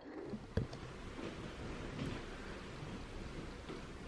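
Quiet indoor room tone with faint rustling, and a single light click about half a second in.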